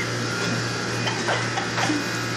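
Steady low hum of commercial kitchen machinery in a restaurant dish room, with a faint constant whine above it.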